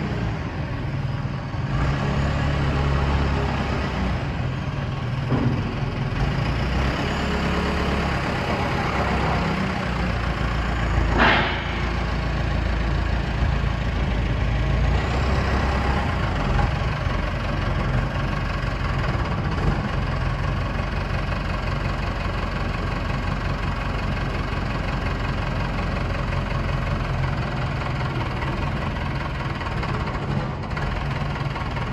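Matbro telehandler's diesel engine running steadily, its note shifting now and then as the machine moves, with one sharp clank partway through.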